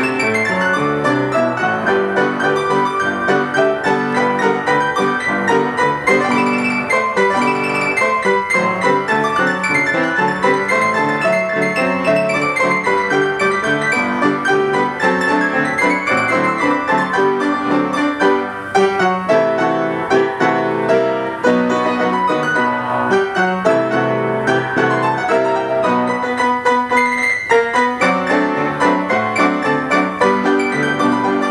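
1928 Chickering & Sons Ampico reproducing player piano playing from an 88-note perforated paper roll: a continuous run of piano melody and chords, briefly thinning twice about two-thirds of the way through.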